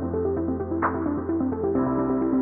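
Electronic intro music with sustained synth chords over a moving bass line, and a bright accent hit just under a second in.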